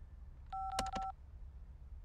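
Corded desk telephone being dialed: a single touch-tone beep lasting about half a second, about half a second in, with a few light clicks of the keypad buttons.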